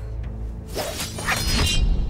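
A film sound effect: a glassy, shattering whoosh with a crackling sparkle, lasting about a second, over dramatic background music.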